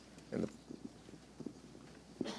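A brief, faint voice sound about half a second in, then a few soft clicks over quiet room tone.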